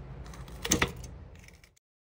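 Kitchen scissors snipping a red chilli, the pieces dropping into a plastic blender jug: a quick cluster of sharp clicks a little under a second in. The sound then cuts off abruptly to dead silence shortly before the end.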